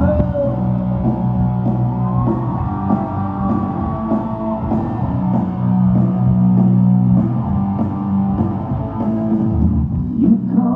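Live rock band playing through a large concert sound system, electric guitars and drums in a steady loud mix, heard from far back in the audience.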